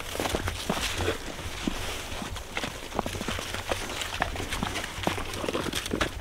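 Footsteps in snow: irregular small crunches and clicks, with clothing rustle, over a low steady rumble.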